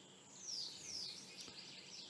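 A bird chirping faintly: two short, high, falling chirps in the first second, over faint background noise.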